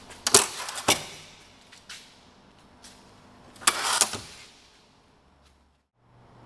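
Door-mounted stainless steel folding table being folded out and put away: two sharp metal clacks within the first second, a few light ticks, then a longer metallic clatter about four seconds in.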